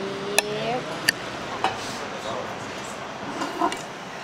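A fork clinking against a china plate in a few sharp taps, the first two about half a second and a second in, under a short hummed "mmm" in the first second, with low restaurant background noise.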